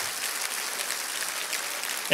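Congregation applauding steadily, in response to a call to give God praise.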